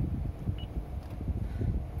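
Low, steady rumble of background noise inside a car cabin, with a few faint clicks.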